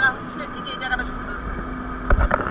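Riding inside an open-sided auto-rickshaw: a steady motor hum with road rumble underneath, which swells about a second in, and brief voices at the start.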